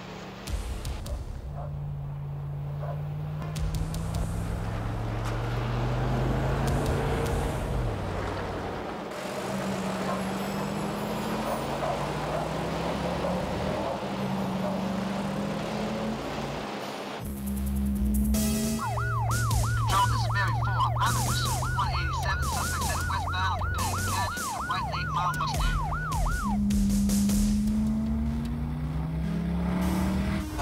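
Car engines accelerating hard through the gears, the pitch climbing and dropping back at each shift. In the second half a police siren joins for about seven seconds in a fast yelp, wailing up and down a few times a second.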